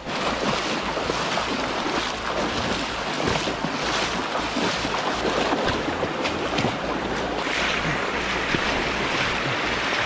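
Shallow river rushing over stones, with splashing of feet wading through it and wind on the microphone.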